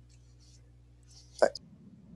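Faint steady low hum and room tone, broken about a second and a half in by one short, sharp spoken word.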